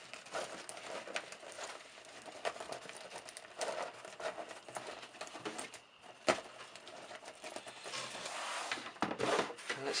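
Rustling and light knocks of braided modular power-supply cables being handled and packed back into their fabric bag, with one sharper click about six seconds in.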